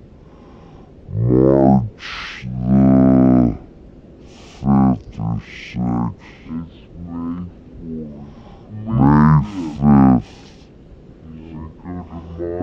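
A man's voice making long, drawn-out vocal sounds with no clear words, several in a row with short pauses between them.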